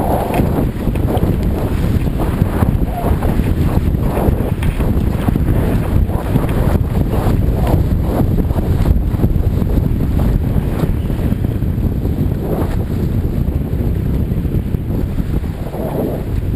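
Wildwater racing kayak running fast river water: rushing water and repeated paddle-stroke splashes, under heavy wind buffeting on the boat-mounted camera's microphone.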